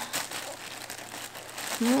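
Paper rustling and crinkling as boxed soap bars are pushed down into a tightly packed shipping box lined with honeycomb kraft paper wrap and tissue paper, with small crackles in it.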